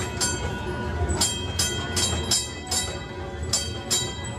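Horse-drawn streetcar moving along its track: a run of sharp metallic clacks about a third of a second apart, with a couple of short gaps, over a steady low rumble.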